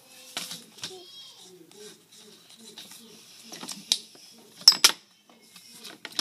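Soft, low children's voices with handling noise: a few sharp knocks, the loudest a quick pair a little before the end.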